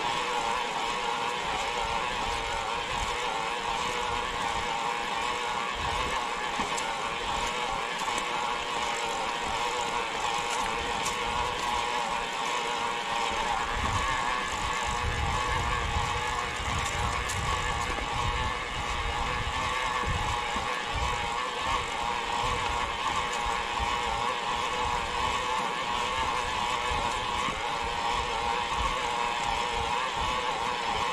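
Electric mountain bike climbing a concrete track: a steady motor whine over tyre hiss, with a low rumble of wind on the microphone in the middle stretch.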